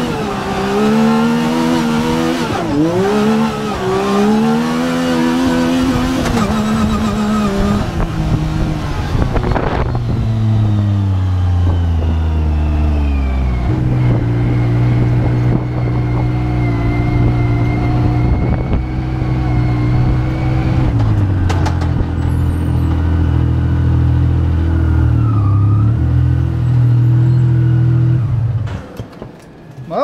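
Yamaha YXZ1000R side-by-side's three-cylinder engine heard from the driver's seat, revving up and down under hard driving for the first several seconds. It then drops to a lower, steadier note with a few small steps in pitch, and fades away near the end.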